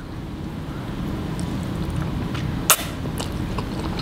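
A mouthful of ramen noodles being chewed close to the microphone, with one sharp click a little under three seconds in.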